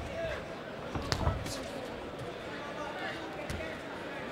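Murmur of an arena boxing crowd with faint distant voices, and a sharp smack from the ring about a second in, followed by a few fainter knocks.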